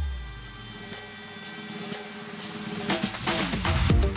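Background dance music in a breakdown: the beat drops out into a low fading boom and quiet sustained tones, then builds back up, with the drums returning near the end.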